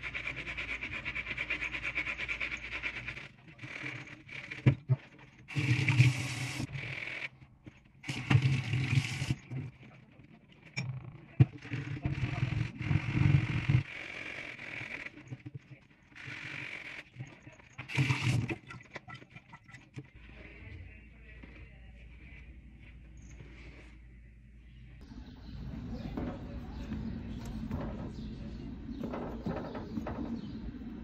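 A soapy kitchen sponge scrubbing a wool sneaker's upper in irregular rasping strokes, with a few louder bursts. It fades to a quieter low hum for the last third.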